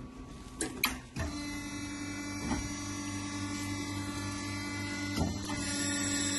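Ravaglioli tractor tyre changer starting up: a few sharp clicks about a second in, then its motor runs with a steady hum while the chuck's clamp arms move, with an occasional knock.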